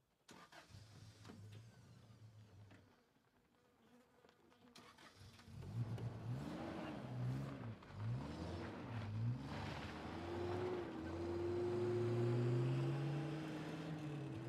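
Ute engine running low and steady, then revving and pulling away on a gravel road. The engine note rises and falls several times as it accelerates, then climbs in one long rise near the end.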